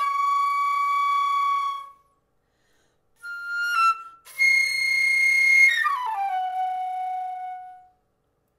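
Solo concert flute: a held note that fades out, a short silence, two brief notes, then a loud, breathy held note that slides down in pitch to a lower sustained note.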